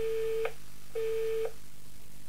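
Telephone busy tone closing a recorded phone message: two steady half-second beeps, one a second, the line-disconnected signal after the call is hung up.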